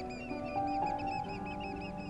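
Eurasian oystercatchers piping, a quick run of short high calls at about five a second, over background music of slow, held notes.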